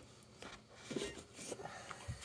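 Quiet handling noise: a few faint rustles and soft taps over a low room background.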